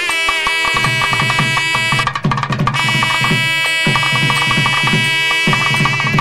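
South Indian temple ritual music: a nadaswaram holds a long, bright reed note over a steady pattern of thavil drum strokes.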